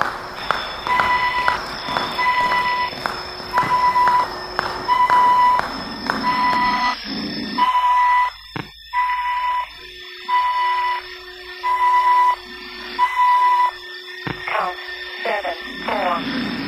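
Electronic gym round timer beeping: a run of short, evenly spaced high beeps a little under a second apart, stopping shortly before the end, over background music and the noise of people training.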